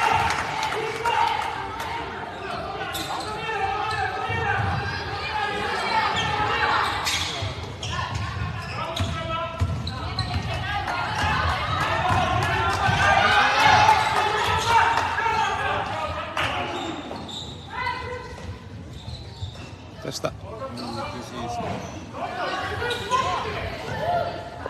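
A basketball game in a large echoing sports hall: the ball bouncing on the wooden court, with players' and spectators' voices calling out.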